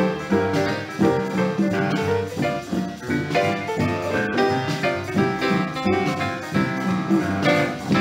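Boogie-woogie piano played at full swing with guitar chords comping on the beat, an instrumental stretch of an early-1950s mono studio recording.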